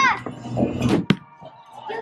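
A bowling ball is released and lands on the wooden lane with a single sharp thud about a second in, then rolls away. A shouted word trails off at the start.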